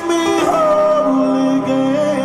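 Male R&B vocals sung live over band accompaniment, ending on a held note with vibrato.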